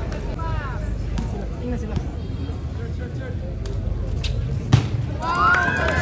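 Crowd of spectators chattering around an outdoor basketball court, with a single sharp knock about three-quarters of the way through and voices rising in a shout near the end.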